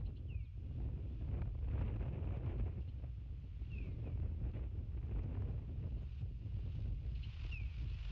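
Wind rumbling on an outdoor microphone, steady and low, with three short, falling bird chirps spread through it.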